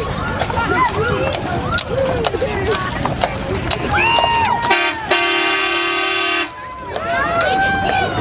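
A horn gives one long steady blast of about two seconds, midway, amid many voices of a parade crowd shouting and calling out.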